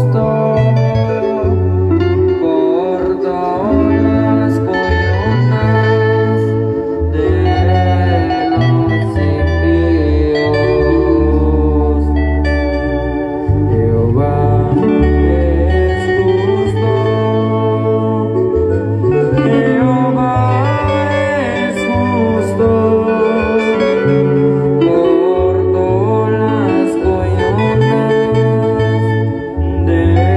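Live band playing a Christian hymn: guitars carry a wavering melody over a steady, stepping bass line, amplified loud through loudspeakers.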